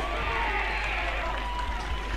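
Football ground ambience from the pitch-side microphones just after a goal: faint, distant voices and shouts from players and a small crowd over a steady background hiss.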